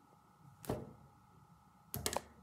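Quiet room with a soft spoken "okay". Right at the end come a few quick sharp clicks, the sound of a plastic marker being handled.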